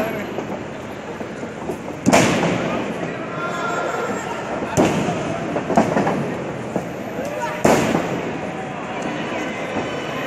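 Wrestlers' bodies slamming onto a wrestling ring's mat: four sharp bangs, the loudest about two seconds in and the others at about five, six and nearly eight seconds, over crowd chatter and shouts.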